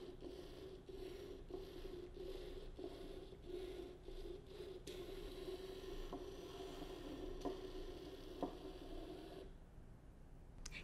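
Faint, steady whir of an Ozobot Evo's tiny drive motors as the robot moves across a tabletop, with a few light clicks in the second half.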